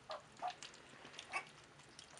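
Puppies eating together from a shared bowl: soft chewing and small clicks, with three short pitched grunts from the feeding pups.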